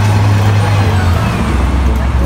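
A heavy road vehicle's engine running, a steady low drone that drops in pitch a little past a second in.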